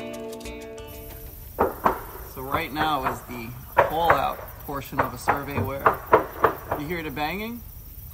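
A boat hull being tapped with a hammer to sound it for dryness, giving sharp knocks at irregular intervals, about half a dozen of them. The knocking checks that the hull is dry and sound.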